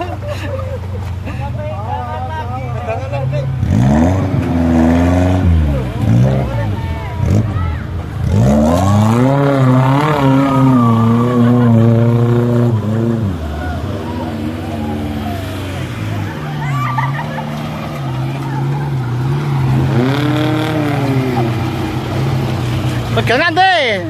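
Off-road 4x4 jeep engine running steadily and revving up and down on a muddy stream-crossing track. The longest, loudest rev is held for several seconds in the middle, with shorter ones before and near the end.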